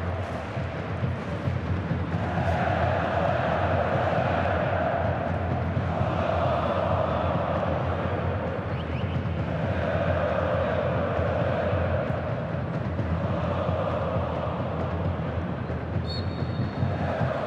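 Football supporters chanting in the stands, many voices singing together in phrases that swell and fade every few seconds.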